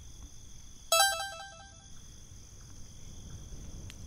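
Short electronic chime like a phone notification: a quick run of bright notes stepping down in pitch, about a second in and lasting under a second.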